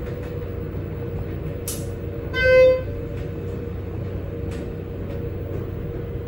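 Schindler 330A hydraulic elevator car travelling down with a steady hum. A single short electronic beep from the car's fixtures comes about two and a half seconds in and is the loudest sound, with a few faint clicks around it.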